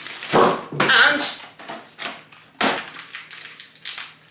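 Thin plastic packaging crinkling and rustling as a bag of breaded chicken bites and a sauce sachet are handled, with a brief voice-like sound in the first second or so.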